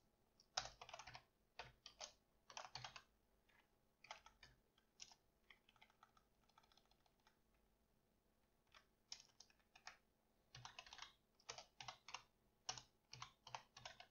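Faint typing on a computer keyboard: clusters of quick keystrokes, with a pause of a second or two about halfway through.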